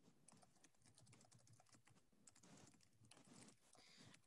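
Near silence with faint, irregular clicks of a computer keyboard being typed on.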